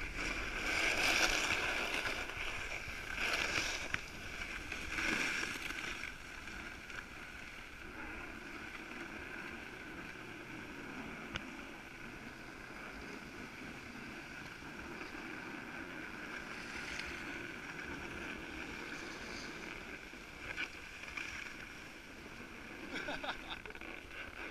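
A rider's edges sliding and scraping over packed snow during a descent, a continuous hiss with several louder surges of scraping in the first six seconds as the rider turns.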